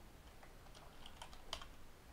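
Faint typing on a computer keyboard: a handful of scattered, irregular keystrokes.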